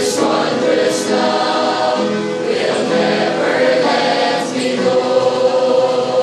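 Mixed choir of young men and women singing a hymn together, with long held notes.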